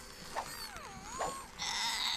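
Cartoon character's voice making a wavering vocal sound that slides down and back up in pitch, with two short sharp clicks. A high steady tone comes in near the end.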